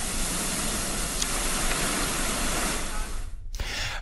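Whitewater rushing steadily through a canoe slalom channel, cutting off suddenly near the end.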